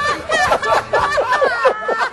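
A woman laughing hard, in quick repeated catches of voice and breath, unable to stop.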